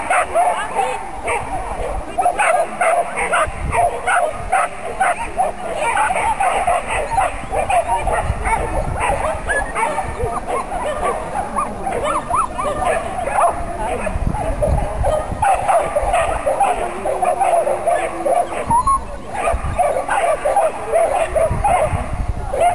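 A dog barking excitedly and almost without pause, several short barks a second, while it runs an agility course.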